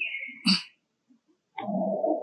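A brief high-pitched animal squeak that steps down in pitch, ending in a sharp click. After a moment of silence, a steady drone begins near the end.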